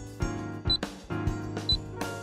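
Background music with clicks on the beat, and two short high beeps a second apart: the pips of a radio time signal counting down to the hour.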